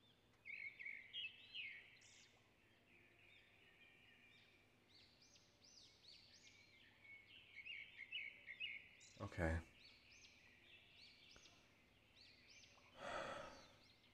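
Faint background birdsong, many short rising-and-falling chirps. Near the end comes a breathy exhale.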